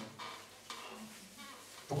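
Quiet room tone in a pause in a man's microphone-amplified speech: a faint hiss with a few soft rustles, his voice returning right at the end.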